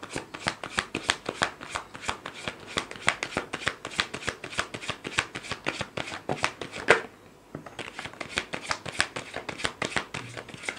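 Deck of tarot cards shuffled by hand: a quick run of soft card slaps and clicks, about five a second, with a louder slap and a short pause about seven seconds in.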